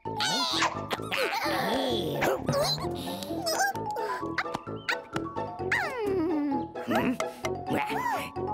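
Cartoon background music with the bunny characters' wordless vocal sounds sliding up and down in pitch, plus a few quick clicks.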